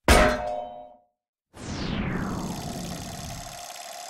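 Logo-sting sound effects: a single sharp metallic clang that rings out for about a second. After a brief silence, a falling sweep settles into a steady tone.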